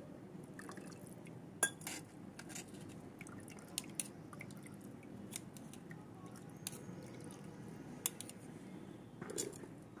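A steel spoon pressing and scraping wet chopped herbs against a stainless steel mesh strainer, squeezing their juice out, with scattered light clicks of metal on metal.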